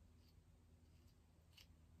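Near silence: room tone with a faint low hum and two or three faint small clicks.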